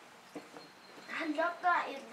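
A person speaking during the second half, after a quiet first second with one faint click.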